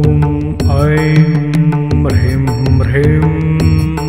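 Devotional mantra music: a voice chanting long, held syllables over a steady low drone, with light percussion ticking at a regular beat.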